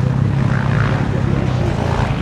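Motocross motorcycle engines running, a steady drone.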